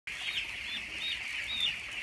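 A large flock of 18-day-old broiler chicks peeping all together: a dense, high-pitched chorus of many overlapping chirps.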